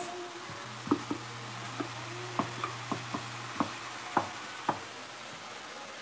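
Wooden spatula knocking and scraping in a stainless steel pan of onions and tomatoes, about ten irregular taps as the mixture is pushed aside into wells for eggs, over a faint sizzle. A low hum runs through the first few seconds.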